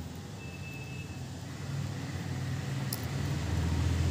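Low steady background rumble that grows slowly louder, with a short faint high tone in the first second and a light click of knitting needles about three seconds in.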